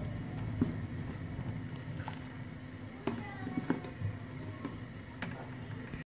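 A big steel pot of milk heating toward the boil for yogurt, giving a steady low rumble. A steel ladle clinks lightly against the pot a few times.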